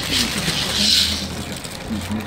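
Wooden maracas in a plastic bag shaken once, a short rattling swish about a second in, over murmuring voices.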